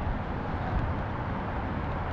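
Steady low rumble of wind buffeting the microphone and road noise while riding along a city street, with no distinct engine note.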